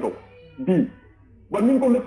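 A man's voice speaking in short phrases broken by pauses: a phrase ends at the start, a brief utterance with a falling pitch comes about two-thirds of a second in, and speech resumes about one and a half seconds in.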